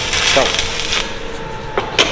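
Electric arc welding crackling and hissing as the steel pieces of a damascus billet are welded together, fading about a second in, followed by a couple of sharp metallic clicks near the end.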